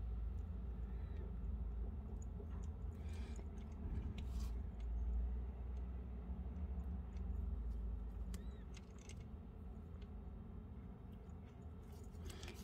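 Faint rustles and small ticks of fingers working a needle and nylon monofilament through seed beads, over a low steady hum.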